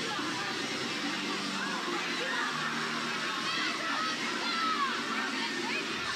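Music playing over a ballpark's loudspeakers, mixed with crowd chatter and scattered high-pitched shouts from the stands.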